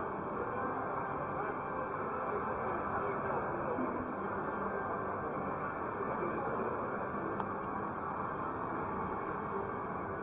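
Casino floor ambience: steady background music blended with the chatter of many voices and the sound of electronic gaming machines.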